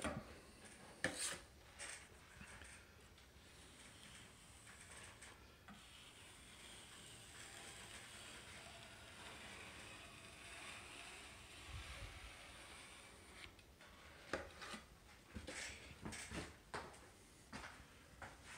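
Drywall knife scraping joint compound along a metal outside corner bead: faint, with a few short sharp scrapes about a second in and a run of them near the end.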